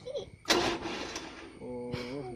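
Diesel generator set's starter cranking briefly: a sudden start about half a second in that dies away after about a second, before the engine has caught.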